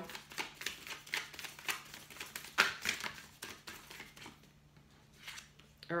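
A deck of oracle cards being shuffled and handled, giving a run of quick, irregular card clicks and slaps for about three and a half seconds, then a quieter stretch with a few soft taps.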